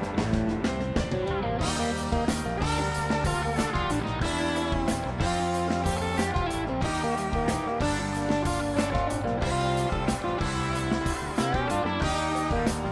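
Rock band playing live in an instrumental passage: an electric guitar lead with bending notes over a steady drum beat.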